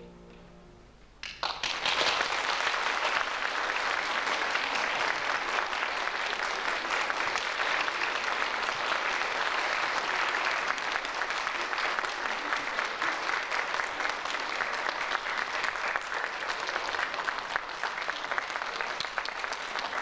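The last clarinet and piano chord fades out, and about a second in an audience starts applauding steadily.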